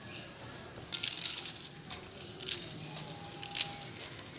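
Dry Maggi instant noodle blocks being crumbled by hand into small pieces in a pan of water. There are short bursts of crackling and snapping, the loudest about a second in and again near three and a half seconds.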